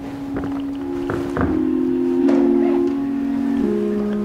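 Church organ playing slow, sustained chords for the offertory, the held notes changing in steps, with a few knocks and rustles from people moving.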